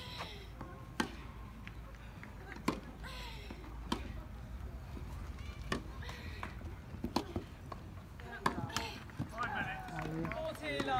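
Tennis balls struck by rackets in a rally, about eight sharp pops spaced a second or two apart, with people talking in the background.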